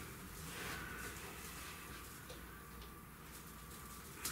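Faint, low rustling as two electrical wires are worked back and forth through a hole in a plywood ceiling panel.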